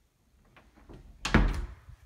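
An interior door knocking once with a loud thud about a second and a quarter in, after a few faint knocks.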